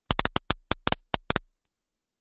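Static crackling on a conference-call phone line: about a dozen short, sharp crackles in quick, irregular succession over the first second and a half, with silence between them. The host puts it down to a caller dialled in by phone who is not on mute.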